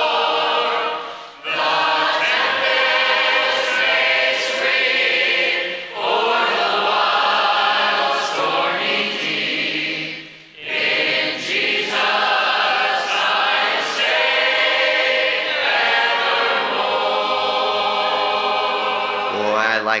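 Church congregation singing a hymn together, line by line, with short breaks between phrases.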